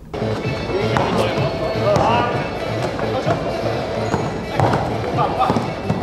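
Ambient sound of an indoor 3-on-3 basketball game: music playing, with voices and shouts and occasional knocks.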